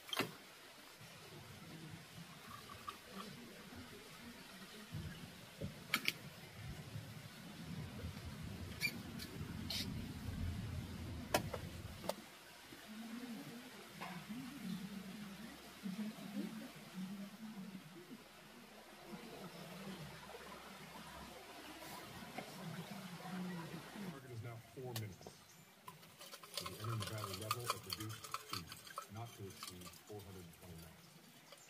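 Faint, muffled speech, with a few sharp light clicks of tableware in the first half.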